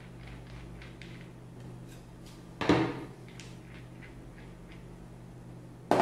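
Handling noise from small metal airgun valve parts being taken apart by hand: light clicks, with one sharper knock about two and a half seconds in.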